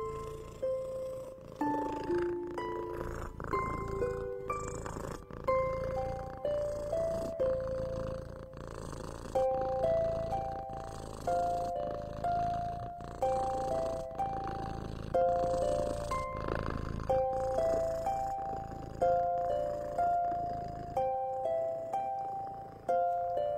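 Soft relaxation music: a slow melody of plucked, bell-like notes, each struck and fading, about one or two a second, over a low steady layer of cat purring.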